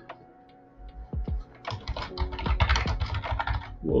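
Computer keyboard typing: a few separate clicks, then a quick burst of keystrokes from about a second and a half in.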